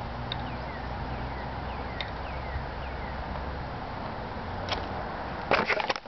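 Steady outdoor background noise with a low hum, broken by a few faint, short falling chirps. Near the end come loud irregular knocks and rustling as the camcorder is picked up and moved.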